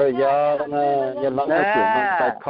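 A person's voice drawing out long vowel sounds: a held note, then a rising and falling wail near the end.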